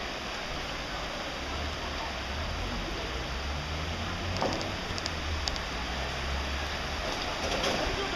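Floodwater rushing steadily along a flooded street, a continuous even wash of water noise.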